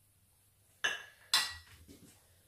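A measuring jug set down into a ceramic bowl, clinking: two sharp knocks about half a second apart, a second in, followed by a couple of lighter ticks.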